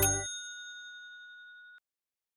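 A short cartoonish jingle cuts off right at the start, leaving a single bright ding: a bell-like chime sound effect that rings and fades, then stops abruptly shortly before the end.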